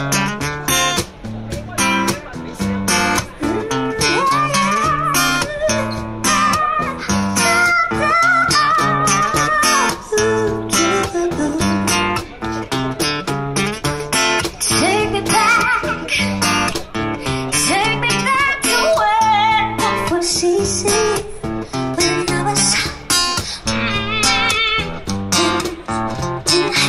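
Acoustic guitar strummed in a steady rhythm, with a woman's voice coming in about four seconds in, singing an improvised melody over it through a small street PA.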